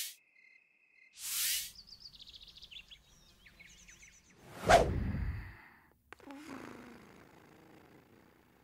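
Animated-cartoon sound effects. A short swish comes about a second in, then light high chirping for a couple of seconds. The loudest is a whoosh that sweeps down in pitch into a brief low rumble, just past the middle.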